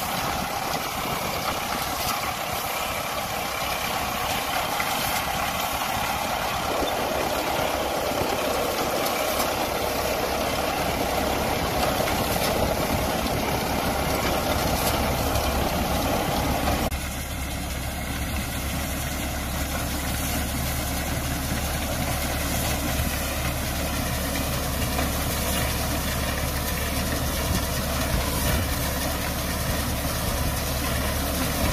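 Tractor diesel engine running steadily under load while its front-mounted reaper-binder cuts and bundles standing wheat. The tone changes abruptly about 17 seconds in.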